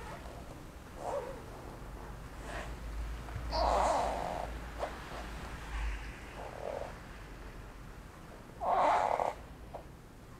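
Soft breathing from a person slowly rolling the knees side to side on an exercise mat: a few quiet swells of breath, the loudest about four and nine seconds in, over a faint low hum.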